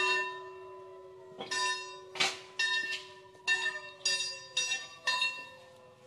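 A bell struck repeatedly, about eight strokes at uneven intervals, each stroke ringing on with steady tones that carry under the next.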